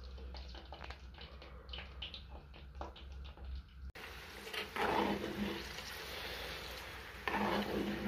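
Pork sausages frying in lard over low heat: a steady sizzle with many fine crackles and pops from the bubbling fat. After a cut about halfway the sizzle turns denser and louder as the sausages are stirred; the sausages are just starting to brown.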